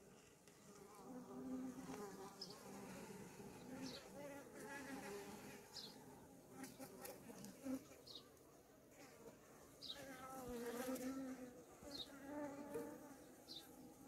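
Honeybees buzzing faintly at an opened hive, their hum wavering in pitch, with faint short high chirps every couple of seconds.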